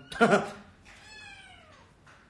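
A short loud vocal sound just after the start, then a domestic cat's long meow that falls in pitch.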